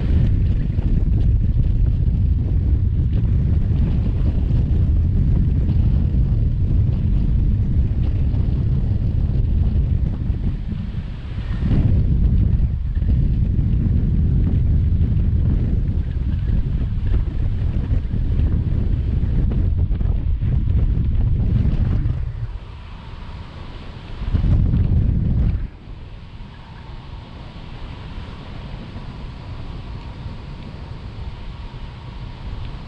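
Wind buffeting the microphone of an action camera on a selfie stick in a gliding paraglider, a loud low rush of noise. It eases off about two-thirds of the way through, surges briefly again, then settles to a softer steady hiss near the end.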